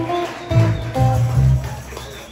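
Live band playing the closing bars of a song: strummed acoustic guitar chords over held electric bass notes, dying away near the end as the song finishes.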